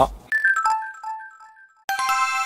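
Short channel intro jingle in chime tones: a quick run of bell-like notes stepping down in pitch, echoing away, then a bright chord struck near the end.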